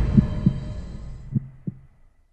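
The fading tail of a news channel's intro jingle: a dying hum with a few soft low beats, sinking almost to silence by the end.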